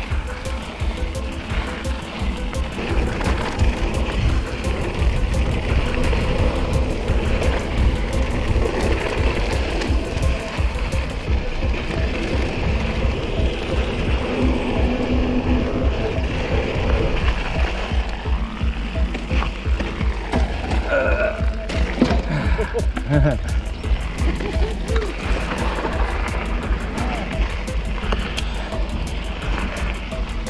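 Wind buffeting the action camera's microphone with a constant low rumble, over the hiss and rattle of a mountain bike rolling fast down a dry dirt singletrack.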